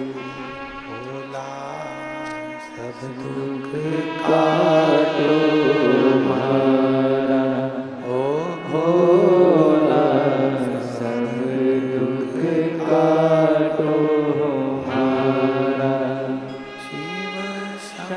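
A man's amplified voice chanting a Hindu devotional mantra in long, drawn-out sung phrases, with a steady musical backing.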